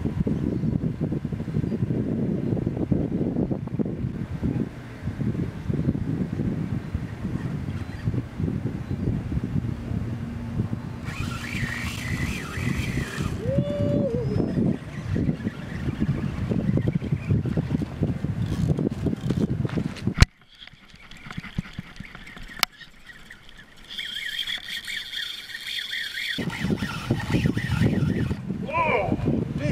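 Wind rumbling on the microphone, cut off suddenly by a sharp click about two-thirds of the way through. Near the end a high steady whine sounds for about two seconds, and then the rumble returns.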